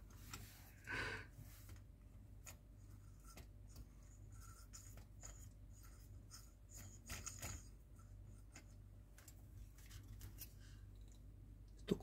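Faint handling noise: small clicks and rubbing of fingers on plastic model parts (wheel, chassis rail, cable), with a soft scrape about a second in, over a low steady hum.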